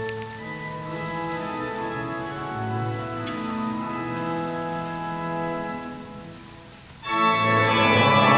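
Church pipe organ playing the introduction to a hymn in sustained chords. The chords fade at the end of a phrase, then the organ comes in much louder about seven seconds in as the hymn proper begins.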